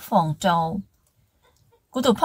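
A narrator's voice for under a second, falling in pitch at the end, then about a second of silence before the voice resumes.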